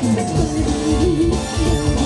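Live dangdut band music: electric keyboard and drums keep a steady beat under a melody line that bends and wavers in pitch.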